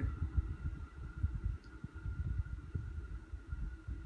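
Ceiling fan running on its slow low speed: a faint steady motor hum over an uneven low rumble of moving air.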